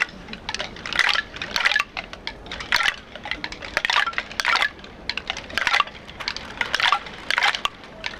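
A group of performers sounding hand-held bamboo percussion together: irregular bursts of dry crackling clatter, about one or two a second, with short gaps between them.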